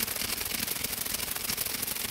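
A rapid, steady stream of clicks and crackle, a sound effect accompanying an animated logo whose scrambled letters flicker before resolving.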